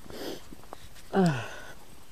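A man sniffs, then about a second later lets out a short sigh that falls in pitch.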